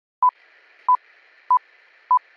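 Short electronic beeps, all at one steady mid-high pitch, three in two seconds and evenly spaced about 0.6 s apart, over a faint hiss.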